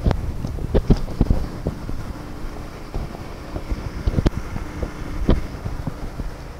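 Wind buffeting the microphone as a low rumble, with several sharp clicks and knocks from a car door being opened, most of them in the first second and a half and two more near the end.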